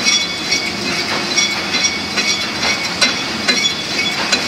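Machinery clattering: a steady mechanical noise with irregular clicks and knocks several times a second and faint high squeals.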